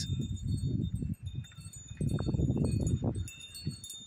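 Wind chimes ringing in a steady breeze, several high tones sounding and overlapping, recorded by a budget phone's microphone. Wind rumbles on the microphone in two gusts.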